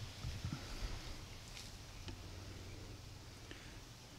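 Quiet outdoor background with a faint steady low hum and a few soft knocks from a handheld camera being moved.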